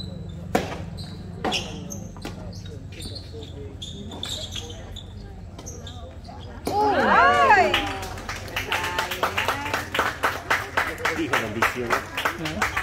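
Tennis ball struck with rackets: a sharp serve about half a second in and a return about a second later, then a few lighter hits. About seven seconds in comes a loud burst of cheering shouts, the loudest sound here, followed by clapping that runs to the end.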